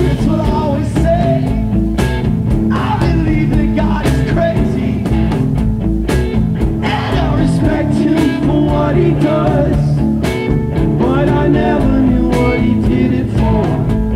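Live rock band playing a song, with electric guitars, bass, drums and keyboard together and a voice singing at times.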